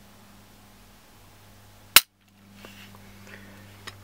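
Glock 19 Gen 5 dry-fired with a trigger pull gauge: one sharp click about two seconds in as the trigger breaks and the striker falls. The break comes at 6 pounds 4.5 ounces.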